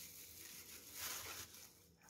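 Almost silent: a faint, soft rustle of a thin plastic bag wrapped around a frozen block of grated carrot as it is handled, a little stronger about a second in.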